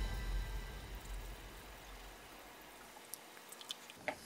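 Near silence: a faint low rumble fading away, with a couple of faint ticks near the end.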